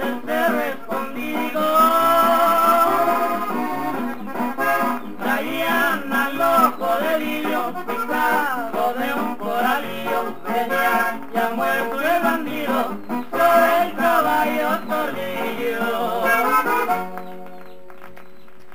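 Instrumental closing of a Mexican corrido recording: an accordion-led melody over a steady strummed guitar and bass rhythm, ending on one held chord near the end.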